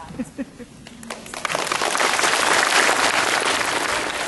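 Audience clapping, starting about a second in and quickly building to full, steady applause.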